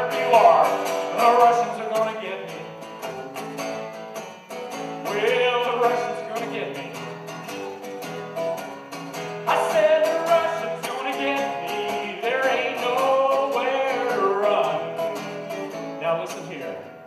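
A man singing a folk-style song to his own strummed acoustic guitar, his voice coming in phrases over a steady strum.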